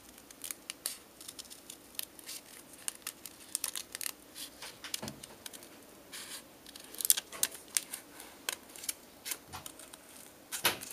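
Small hand scissors cutting through a folded sheet of paper: a run of short, irregular snips, several a second.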